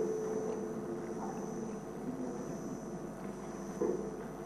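A pause in a speech picked up by a hall microphone: faint, steady room hum and background noise. A brief voice sound comes just before the end.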